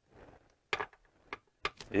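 A few short, light clicks and taps from handling parts of a Saginaw manual transmission during reassembly, four or five spread over the second half.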